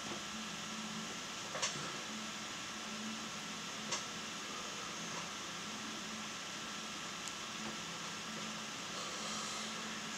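Steady low hiss of room noise with a faint hum, broken by two soft clicks about one and a half and four seconds in.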